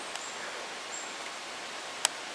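Low, steady outdoor background hiss with no distinct events, and a faint high-pitched chirp at the start and again about a second in.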